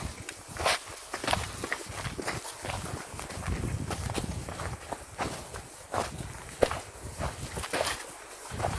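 Footsteps of several men moving over rough ground: irregular steps a few times a second, over a low rumble.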